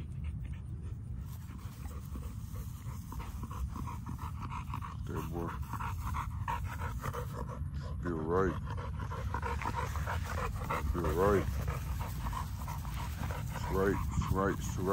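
XL bully dog panting hard, over a steady low rumble. A few short wavering vocal sounds stand out around the middle and near the end.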